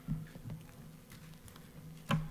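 Faint rustling and shuffling of a congregation standing with their hymnals, with a few soft knocks and a low steady hum underneath.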